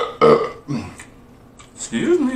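A man burping while eating: a short, loud burp near the start, followed by a smaller one under a second in.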